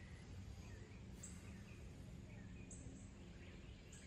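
Near silence: faint outdoor background with a few faint, short high chirps.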